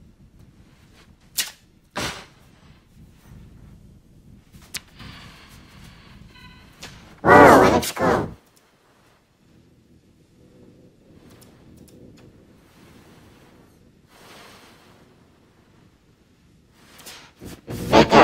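A few sharp clicks, then about seven seconds in a loud, pitched burst lasting about a second; the rest is low background rumble.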